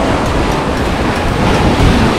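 Waves breaking and washing up a sandy shore, with wind buffeting the microphone in a low rumble.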